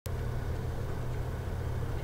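Steady low hum with a faint hiss: the background noise of the recording setup before any speech, opening with a sharp click as the recording starts.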